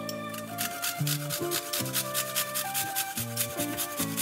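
A garlic clove being grated on a flat stainless-steel grater, starting about half a second in: quick rasping strokes in an even rhythm, several a second, over background music.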